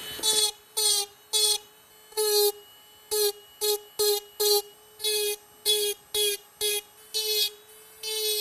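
High-speed handheld rotary carving tool running with a small bit, touched against a wooden carving in about a dozen short smoothing passes. Each pass brings up a loud, steady whine, which drops back to a faint hum between passes.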